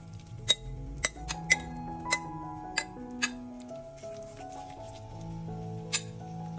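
A metal spoon clinks against a glass bowl about seven times at irregular intervals while a raw chicken and grated potato mix is scraped out of it, over background music.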